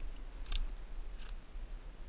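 Dry brush crackling: two short twig snaps, the first about half a second in and a fainter one a little after a second, over a low rumble.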